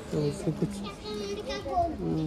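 People talking: a lower voice briefly, then a higher-pitched voice.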